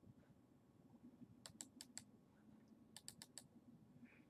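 Faint computer mouse clicks in two quick runs of about four clicks each, a little over a second apart, against near silence.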